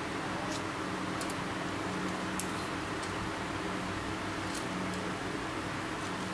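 Steady low hum of room noise with a few faint, sharp clicks, as a metal hole-cutter and tape measure are handled.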